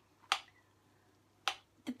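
A few short, sharp clicks of a spoon against a ceramic serving dish as a quinoa salad is stirred, the first two about a second apart.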